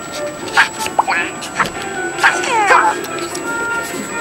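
Smartphone game music and sound effects: short chiming notes and clicks, with a cluster of falling swoops a little before the end.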